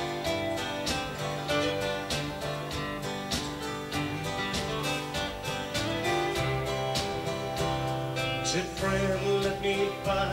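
Live country band playing a song's instrumental opening, led by a strummed acoustic guitar over a steady beat.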